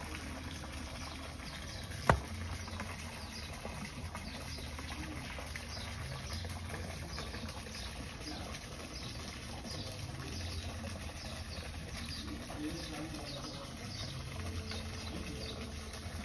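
Small birds chirping over and over, in short high falling notes, above a steady low hum. There is one sharp click about two seconds in.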